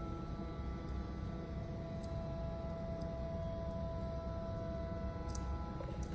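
Ori Cloud Bed's electric lift drive running as the ceiling bed rises: a steady low hum with a few steady whining tones and a couple of faint ticks.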